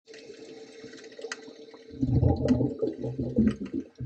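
Water heard underwater through a camera's housing: a faint steady hiss at first, then, about two seconds in, loud, low, muffled burbling and sloshing in uneven surges.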